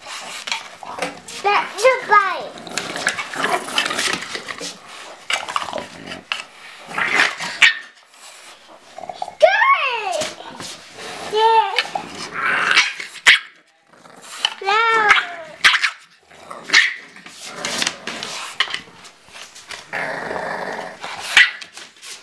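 Two English bulldogs, a puppy and an adult, play-fighting: growls and barks, with several high yelping calls that slide down in pitch, among bursts of scuffling.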